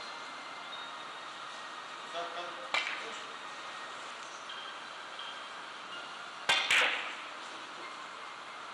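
Hard clacks of carom billiard balls from another table in a quiet hall: a single click near the middle, then a louder double click with a short ring.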